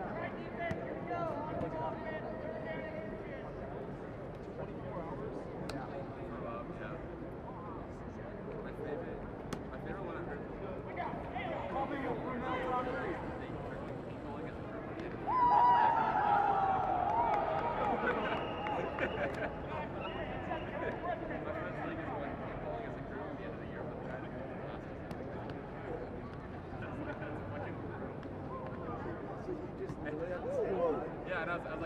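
Players' voices calling out and talking across a football field, with no clear words. About halfway through, one loud, drawn-out shout falls steadily in pitch over about two seconds as a play runs.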